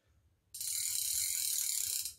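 Drag clicker of a size-6000 spinning reel ratcheting as line is pulled off the spool by hand against the drag. It starts suddenly about half a second in and runs as a steady, high, rapid clicking buzz for about a second and a half.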